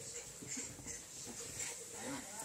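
A pinscher dog play-fighting with a cat on a bed: faint, irregular animal noises, with short louder sounds about half a second and a second and a half in.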